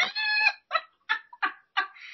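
A woman laughing: one drawn-out high note, then several short bursts with gaps between them.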